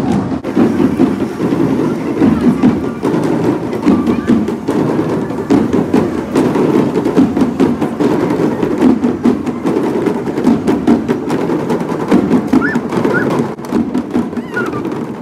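Parade drum band of marching drummers playing, many drums beating a steady rhythm of sharp strokes.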